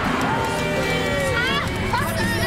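Shouting voices over a dramatic music bed, with a sharp rising cry near the end.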